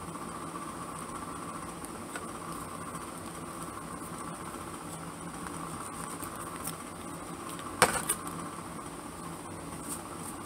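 Steady mechanical background hum, with one sharp click about eight seconds in.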